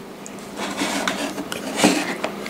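Handling noise as a USB cable and a small plastic USB current meter are fitted into a power bank: light rubbing and clattering, with a sharper click near the end as a plug seats.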